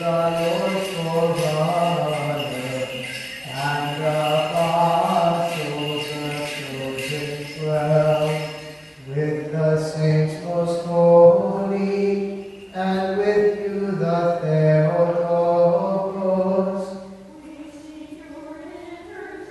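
A man chanting a Byzantine hymn unaccompanied, in a slow melody of long held notes. The chant falls away near the end.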